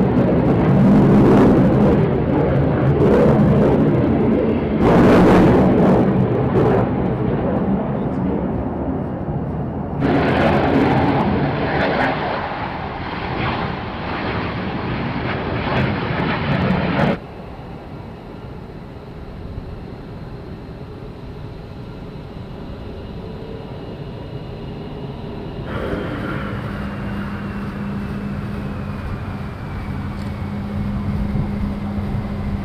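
Twin-engine F-15 fighter jets passing at high power in loud jet noise, broken by abrupt cuts. About halfway through, the sound drops suddenly to a quieter, steady jet rumble. Near the end, an F-15E Strike Eagle on landing approach gives a steady engine drone with a thin whine that slowly falls in pitch.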